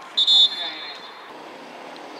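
A referee's whistle blown once: a short, high blast near the start that fades out by about a second in, over faint outdoor background noise.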